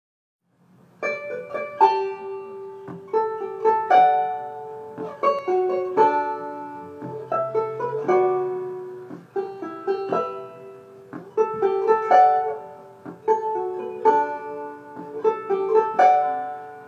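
Five-string banjo picking a slow melody, each note ringing out, starting about a second in.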